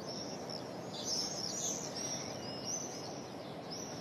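Birds chirping: a series of short high chirps over a steady outdoor background hiss.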